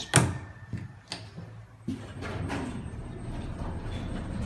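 Schindler 300A hydraulic elevator: a sharp click, then the sliding doors close with a thud just before two seconds in. A steady low hum follows as the car starts to move.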